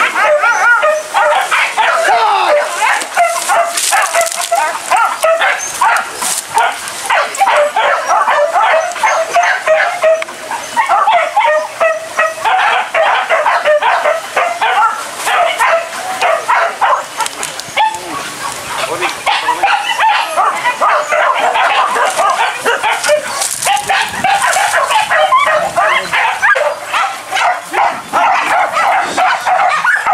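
Hunting dogs yelping and barking continuously in quick, overlapping cries, the excited calling of dogs working a trail through the grass.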